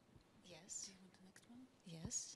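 Faint, quiet speech, partly whispered: women talking softly, away from the microphone.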